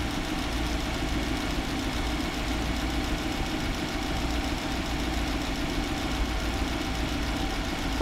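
Engine idling steadily, with the even hiss of a handheld butane torch close by.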